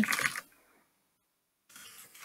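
Computer keyboard keys clicking faintly while commands are typed, starting near the end after a second of silence; a spoken word trails off at the start.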